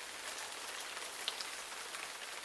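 Thin stream of tap water from a bathroom faucet falling into a sink basin, a steady light splashing hiss.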